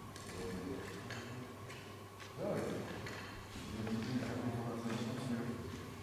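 Indistinct voices of people talking in a large, echoing sports hall, with scattered light clicks and knocks. One louder, rising sound comes about two and a half seconds in.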